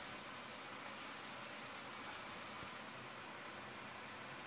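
Faint, steady sizzle of beef curry frying in a cast iron pot.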